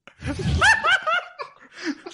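People laughing at a joke: a burst of short, pitched laughs in the first second or so that then dies away.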